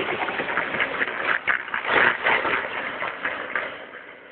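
Battery-powered ride-on toy car driving over asphalt: its plastic wheels and small electric motor make an uneven, rattling running noise that fades in the last second as the car pulls away.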